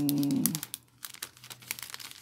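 Clear plastic bag crinkling in irregular crackles as a bundle of paper tags and cutouts is handled inside it.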